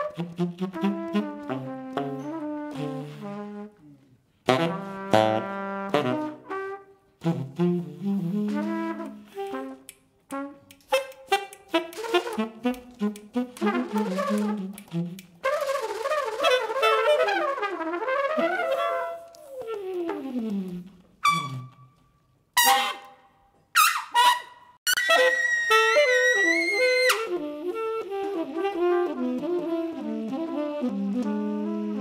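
Tenor saxophone and trumpet improvising together in a live jazz band with piano and double bass. The playing comes in short, clipped phrases broken by brief pauses, with a long falling glide about two-thirds of the way through and high held notes near the end.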